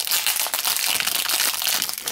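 Foil blind-bag wrapper crinkling and crackling steadily as it is handled and a vinyl mini figure is pulled out of it.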